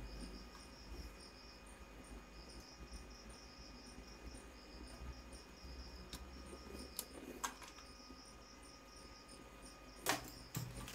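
Faint, steady high-pitched chirping of an insect in an evenly pulsing rhythm, with a few soft clicks from a braided USB mouse cable being handled about six to seven seconds in.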